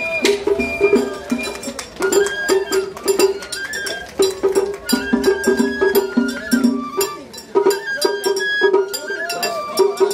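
Japanese festival hayashi music played on a float: a high bamboo flute (shinobue) melody with gliding notes over a busy pattern of taiko drum and small hand-gong strokes.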